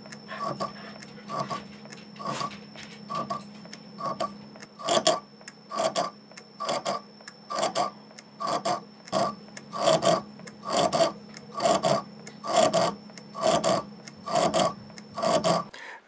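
MN-80 lathe running at its lowest speed with a steady hum, while the boring tool cuts an oil groove inside the off-centre tailstock body in a rhythmic scrape about twice a second. Because the bore is set eccentric on the mandrel, the tool bites over only part of each turn. The lathe stops just before the end.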